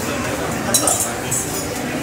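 Light metallic clinks of a small silver puja cup and spoon, two short clusters about three-quarters of a second in and again just after the middle, over the chatter of voices in a crowded temple room.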